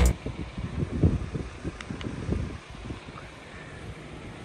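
Wind buffeting a handheld phone microphone in irregular low gusts, dying down after about two and a half seconds to a faint steady hiss.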